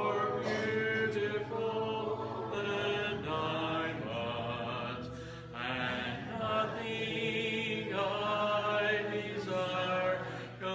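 Church congregation singing a hymn a cappella in parts, led by a song leader, with a short break between phrases about five seconds in.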